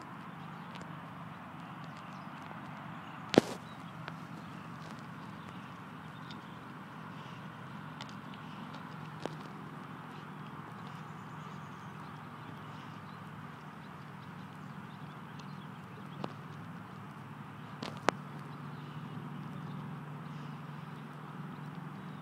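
Alaskan malamute chewing a rabbit carcass: a few sharp cracks of crunching bone, the loudest about three seconds in and another near eighteen seconds, with smaller clicks between.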